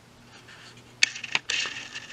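Two sharp clicks about a second in, then a short scraping rustle: hands handling the plastic body of an opened laptop at its side power button.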